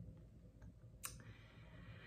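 Near silence: room tone, with a single short click about halfway through.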